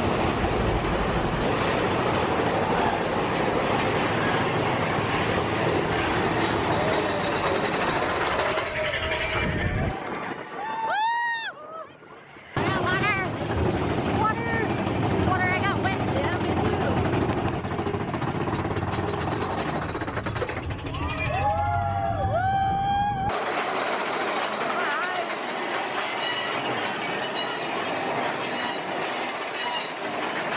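Big Thunder Mountain Railroad mine-train roller coaster running along its track: a loud, steady rumble of wheels and rushing air. Riders scream in rising-and-falling cries about a third of the way in and again about three-quarters through. The rumble briefly drops out just before the first screams, and near the end it gives way suddenly to a thinner hiss.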